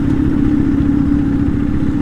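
KTM Duke 250's single-cylinder engine running at a low, steady speed as the motorcycle rolls slowly over a rough dirt road, recorded on board. It gives one even hum over a low rumble.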